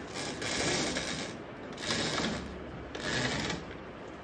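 A heavy fabric curtain being drawn back and lifted by hand, in three rasping, rustling pulls about a second apart.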